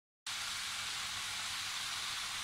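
A steady, even hiss with a faint low hum underneath, starting a moment in after a brief silence.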